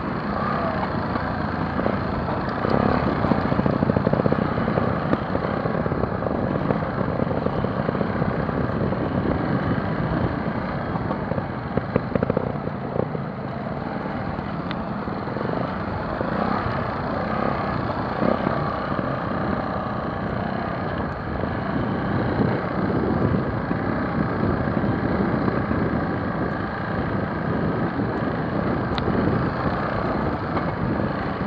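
Trials motorcycle engine running as the bike rides down a rocky trail, heard from on board, the level swelling and easing with the ride.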